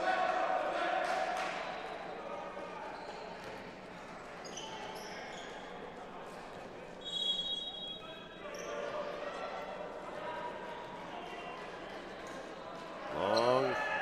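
Gymnasium ambience between volleyball rallies: players calling out in the echoing hall and a ball bouncing on the hardwood floor. A short, high referee's whistle sounds about seven seconds in, signalling the serve.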